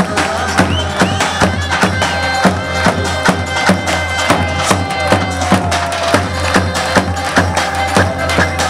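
Live Turkish folk dance music: a davul bass drum beats a steady dance rhythm under a reedy, sustained wind-instrument melody with sliding notes.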